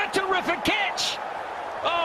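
Mostly speech: a male cricket commentator talking over the television broadcast, with a quieter gap in the second half.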